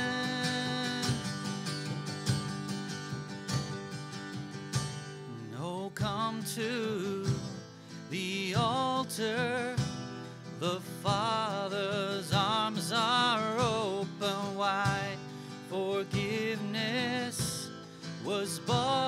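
Acoustic guitar strummed under a slow worship song, with singing carrying vibrato that comes in more fully about six seconds in.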